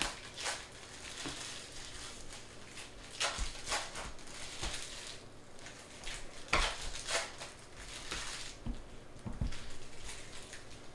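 Trading cards and their packaging being handled on a table: irregular rustling, crinkling and scraping, with a few light knocks.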